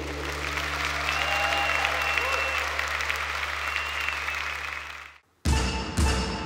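Audience applauding and cheering with a few whistles, over a steady low hum. About five seconds in it all cuts out abruptly, and a struck percussion note, like a mallet on a wood block, starts the next song.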